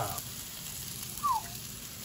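Onion rings frying on a Blackstone flat-top griddle, a faint steady sizzle. A single short falling chirp comes a little past a second in.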